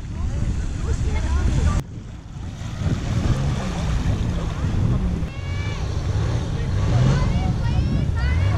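Wind rumbling on the microphone over surf, with people's voices in the background and a few short high-pitched shouts in the second half.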